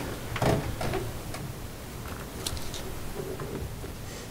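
Quiet meeting-room background with a few faint clicks, from a laptop being clicked through to bring up site photos. There is a brief bit of voice about half a second in.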